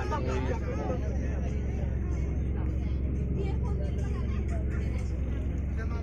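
Steady low drone of a bus's engine and running gear heard from inside the passenger cabin while the bus travels, with faint chatter of passengers over it.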